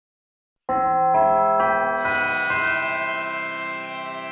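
Church bells ringing: about five strikes roughly half a second apart, each new note layering over the ringing of the ones before, starting after a short silence and slowly dying away.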